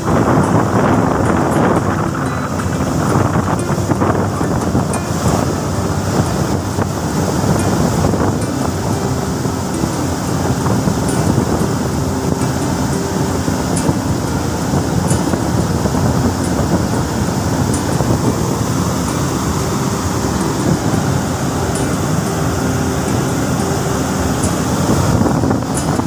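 Cooling water raining down from a cooling tower's fill into the catch water basin: a loud, steady rushing like a heavy downpour, with a low rumble underneath.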